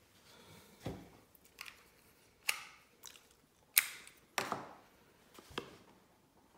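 A series of about six sharp plastic clicks and knocks from a PEZ candy dispenser being handled and set down on a wooden desk, the loudest two near the middle.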